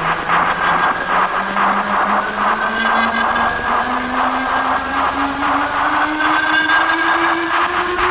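Hardcore electronic music (terrorcore/speedcore) with a fast, pounding distorted beat under a tone that slowly rises in pitch throughout.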